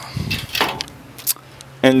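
Steel pull-out grill rack on a smoker firebox being handled: a short metal scrape, then a few sharp clicks and knocks.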